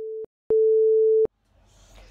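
A pure sine-wave test tone played at two volumes at the same pitch: the quiet tone ends about a quarter second in, and after a short gap the same tone sounds much louder for under a second. It demonstrates two sounds of equal frequency and wavelength but different intensity, or volume.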